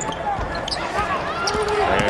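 Basketball bouncing on a hardwood court during live play, heard plainly in an arena without a crowd, with voices over it.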